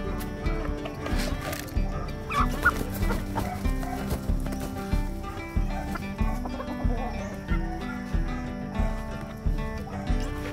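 Chickens clucking, with a short, sharper call about two and a half seconds in, over background music with a steady beat.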